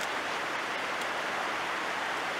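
Steady, even outdoor background hiss with no distinct sounds in it.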